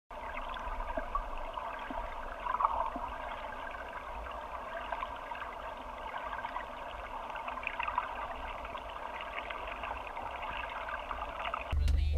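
Muffled sound of a shallow stream as heard from a camera underwater: steady water flow with small ticks, dull above the middle range. Near the end it cuts to a louder low rumble inside a vehicle cab.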